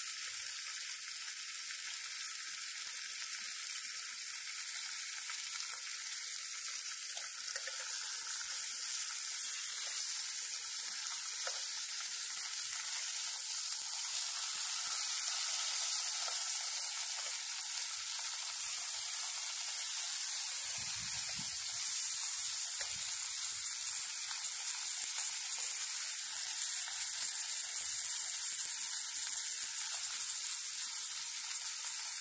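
Bacon rashers frying in a metal mess tin on a small gas canister stove: a steady sizzle that grows a little louder as more rashers go into the tin.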